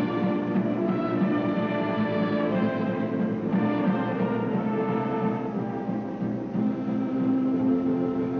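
Orchestral music with held string-like chords that change every second or two.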